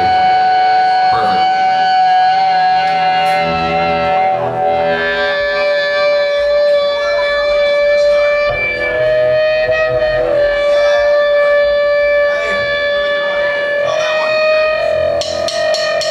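Live punk-rock band at the start of a song: an electric guitar holds one long note, drops to a lower note about five seconds in and sustains it with slight wavers, and drum hits come in near the end.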